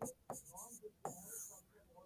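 Faint stylus strokes scratching on an interactive whiteboard screen as numbers are written and circled.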